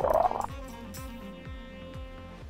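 Glitter slime squelching with a rising pitch as a plastic play-dough plunger tool is pressed into it, cutting off about half a second in. Background music follows.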